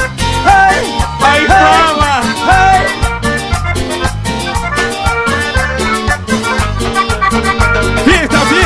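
Live cumbia band music: accordion, electric guitar, bass and percussion playing a steady dance beat, with melodic lines sliding in pitch over the first three seconds.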